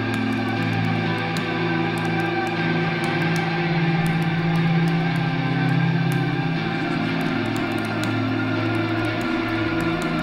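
Electric guitars holding long, slowly changing chords through effects, the low notes each held for a few seconds.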